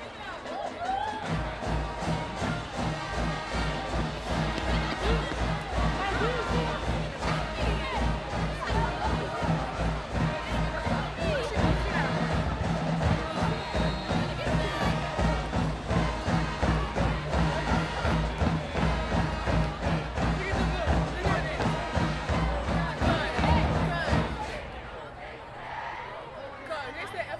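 High school marching band playing: brass and sousaphones over a steady, evenly pulsing drum beat. It starts about a second in and stops shortly before the end.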